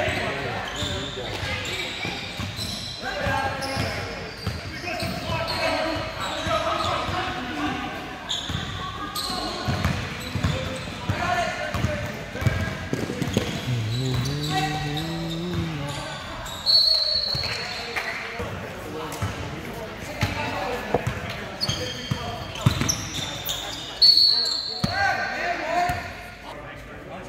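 Basketball game in a gym: a ball bouncing on the hardwood floor among players' and spectators' shouts and chatter, echoing in the large hall. Short high squeals cut through twice in the second half.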